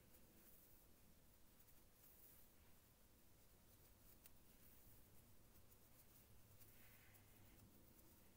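Near silence: room tone with faint, scattered rustles and ticks of cotton yarn being handled as a crocheted drawstring is woven in and out through the mesh of a crocheted pouch.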